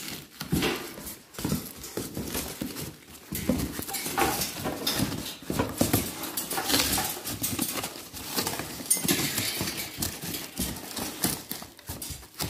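Cardboard carton being opened and handled by hand: flaps rustling and scraping, with irregular knocks and clicks from the packed parts.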